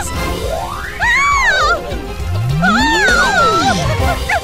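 Cartoon sound effects over background music: long sliding pitch glides, one rising and falling in the first half and another rising then falling in the second, with a wavering high cry riding on top.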